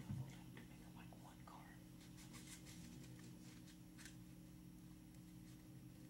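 Near silence: room tone with a steady low hum and a few faint scattered ticks, with a soft thump right at the start.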